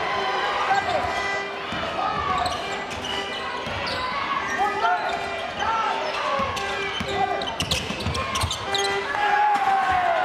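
Court sound of a basketball game in a sports hall: crowd voices and cheering, with a basketball being dribbled on the court and a run of sharp bounces near the end.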